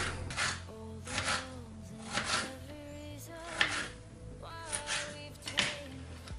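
Background music with held notes. Over it come several short, sharp knocks at uneven intervals, which are a knife slicing a tomato on a cutting board.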